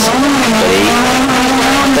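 Renault Clio rally car's engine heard from inside the cabin, running hard at high revs, its pitch holding steady and creeping slowly upward as the car accelerates.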